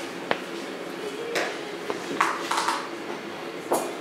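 Metal palette knife scraping thick oil paint in several short strokes, with a click near the start, over a steady low hum.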